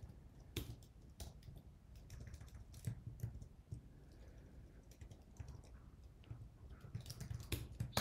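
Computer keyboard typing: faint, irregular keystrokes with pauses between them, and a quicker run of keystrokes near the end.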